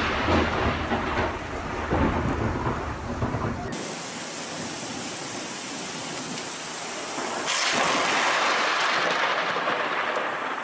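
Thunder rumbling in heavy rain, swelling a few times. A few seconds in it gives way abruptly to a steady hiss of heavy rain, which grows louder about halfway through.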